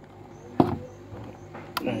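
Sharp clicks of a plastic extension-socket switch being pressed on to power the pump, the loudest about half a second in and a second one near the end.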